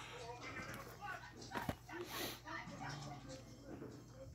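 Faint, indistinct voices in the background, over a steady low hum.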